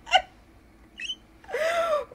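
A woman laughing. A quick laugh ends just after the start, then comes a short squeak about a second in, and a high, drawn-out squeal of laughter near the end that rises and falls in pitch.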